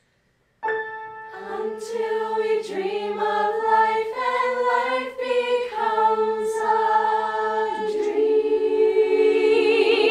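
A mixed ensemble of male and female voices singing a cappella in close harmony. They enter together about half a second in after a moment of silence and build through held chords, ending on a sustained chord with vibrato.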